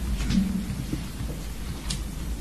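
Steady low rumble and hiss of a crowded courtroom's room noise, with a faint voice briefly about a third of a second in and a small click near the end.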